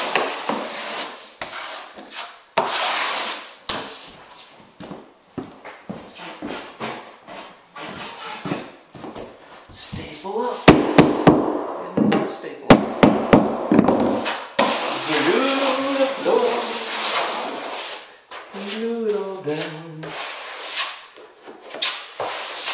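Steel trowel scraping and spreading flooring adhesive over a plywood subfloor, with a quick run of sharp claw-hammer strikes on the floor about halfway through.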